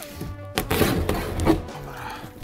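Box cutter slicing along the packing tape on the seam of a cardboard box, the blade scraping and clicking on the cardboard, over background music.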